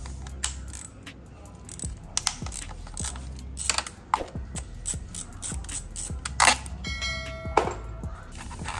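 Hand socket driver working the bolts of a KTM Adventure's front sprocket cover to take the cover off: a run of metallic clicks and ticks from the tool and bolts. A short ringing chime sounds near the end.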